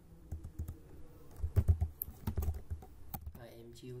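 Typing on a computer keyboard: a run of separate keystrokes, several louder ones in the middle.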